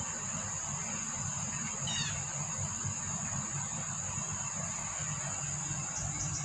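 Steady high-pitched insect chirring, with a low steady rumble underneath and a brief descending chirp about two seconds in.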